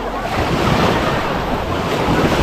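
Small waves washing up and breaking on a sandy shore in a steady hiss of surf, with wind buffeting the microphone.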